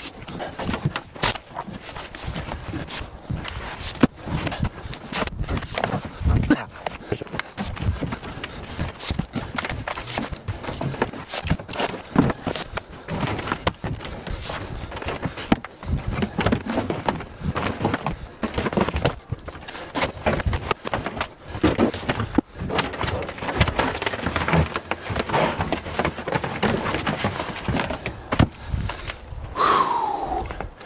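Heavy hardwood log rounds being pushed and dropped off a pickup truck's bed: a busy run of irregular wooden thuds and knocks as they hit the ground, with scraping as they slide along the bed.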